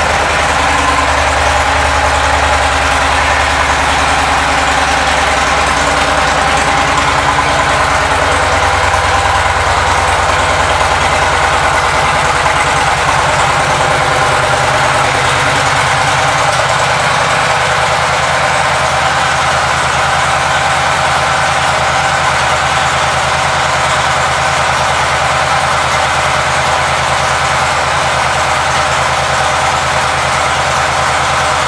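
2017 Victory Magnum's 106 cubic inch V-twin engine idling steadily in neutral.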